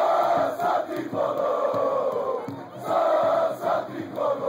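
Large football stadium crowd chanting in unison: loud phrases about a second long, repeating with short breaks, over a steady low beat.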